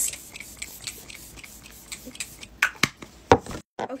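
Plastic skincare bottles being handled: a brief face-mist spray at the very start, then soft rubbing and a few light taps and clicks, the sharpest a little after three seconds in.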